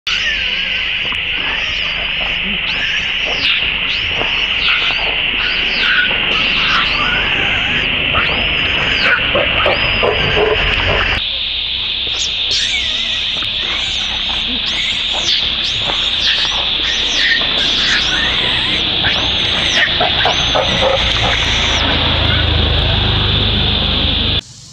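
Baby long-tailed macaque screaming in repeated short, high squeals that rise and fall, about one a second, over a steady high-pitched drone.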